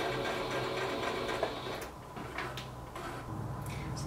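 Singer electric sewing machine running steadily as it stitches the side seam of a skirt closed, dying down about halfway through.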